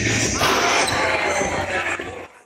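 Basketball dunk in a gymnasium: a sudden knock of ball and rim about half a second in, then the ball bouncing on the hardwood floor amid voices and crowd noise echoing in the hall, fading out near the end.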